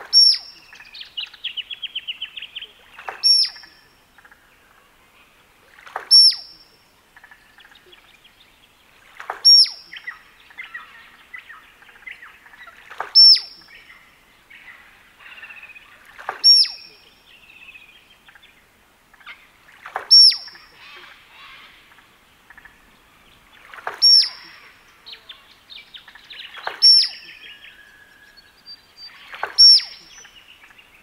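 Male musk duck display: a piercing whistle together with a loud knock, repeated ten times about every three seconds.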